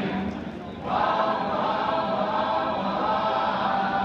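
A choir singing, going into a loud held chord about a second in.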